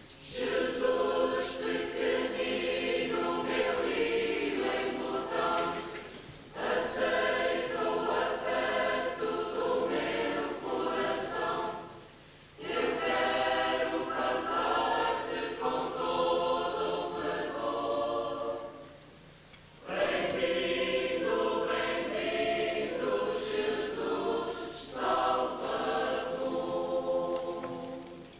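Church choir singing a hymn in four long phrases, with brief pauses between them.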